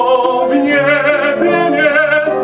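Operatic voices singing sustained notes with a wide vibrato over piano accompaniment.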